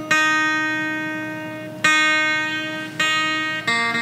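Acoustic guitar strummed four times, each chord left to ring and fade; the last strum, near the end, is a different chord.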